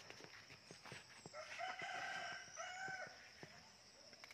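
A rooster crowing once, faintly, starting about a second and a half in and lasting nearly two seconds, with a short break before its last note.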